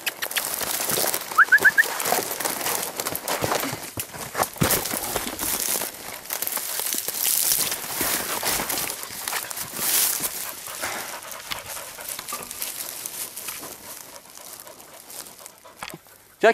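Dry brush, twigs and leaf litter rustling and crackling underfoot as someone pushes through scrubby undergrowth. Three quick rising chirps sound about a second and a half in.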